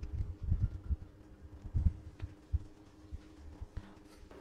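Irregular low thumps and rumbling, the loudest a little under two seconds in: handling noise from the camera as it is picked up and moved.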